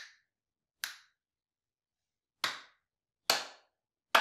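Four single hand claps at uneven gaps, each followed by a short room echo; the last two are the loudest.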